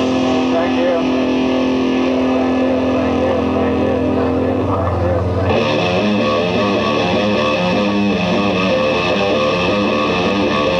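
Live rock band playing an instrumental passage: distorted electric guitar holds one long note for the first few seconds, then the band breaks into a busier, brighter riff from about five seconds in.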